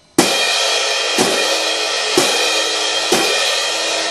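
Pair of orchestral crash cymbals clashed together at forte: four crashes about a second apart, each ringing on into the next.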